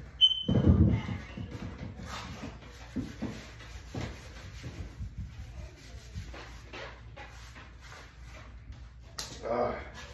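A person moving about between exercise sets: a heavy thump and rustle about half a second in, then scattered light knocks and scuffs, and a short vocal sound near the end.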